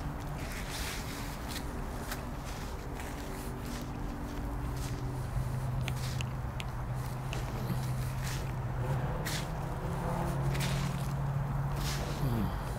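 Gloved hands digging and sifting through loose potting soil on a plastic tarp: irregular rustling, scraping and crunching. A steady low hum runs underneath.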